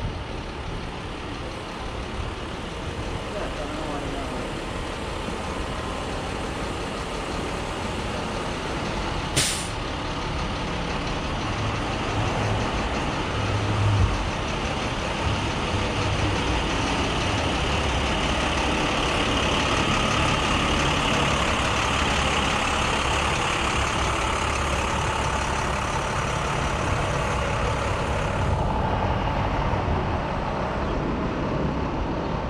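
City street traffic with a large truck's diesel engine running close by, growing louder through the middle and latter part. A short sharp hiss comes about nine and a half seconds in.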